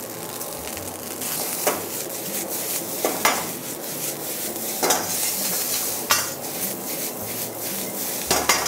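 Fried rice with chopped lettuce sizzling in a hot wok while a wok ladle stirs and tosses it, with a few sharp metal knocks of the ladle against the wok.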